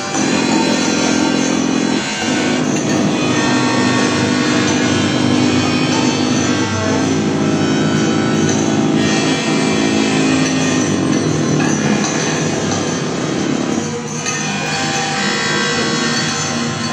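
Live experimental electronic music: loud, dense layered drones with a hiss-like noise layer over them, the drones shifting to new pitches a few times.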